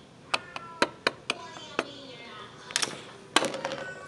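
Hard plastic toy craft pieces being handled on a table: a run of sharp clicks and taps, some with a short ringing note, then two quick clattering bursts near the end, the last the loudest.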